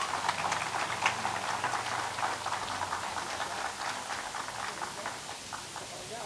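Audience applauding, dense at first, then thinning out and dying away about five seconds in.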